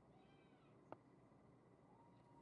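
Near silence, broken by a faint, short, high-pitched call that rises and falls in pitch, then a single sharp click just under a second in.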